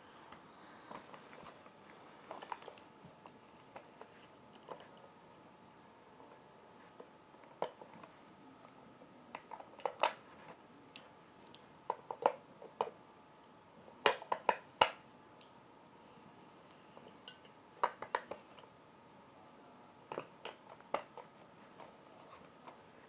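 Faint scattered clicks and knocks, some single and some in quick clusters of two or three, over quiet room tone.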